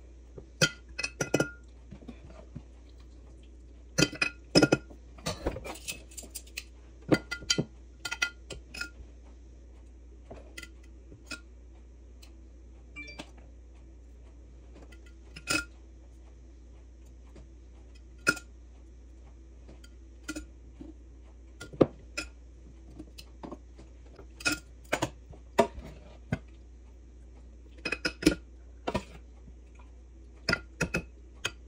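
Metal tongs clinking against a large glass jar as sliced vegetables are lifted in, in irregular sharp clinks with a brief glassy ring, some coming in quick clusters.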